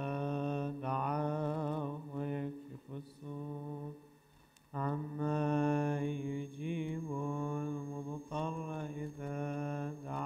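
A man's voice chanting Arabic recitation in long, drawn-out melodic lines, with a short pause for breath about four seconds in.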